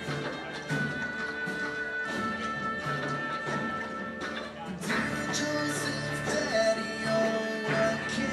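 Live symphony orchestra and band playing an instrumental passage, with strings and acoustic guitars over sustained chords. About five seconds in the full ensemble comes in harder with a cymbal-like splash, and a high note is held near the end.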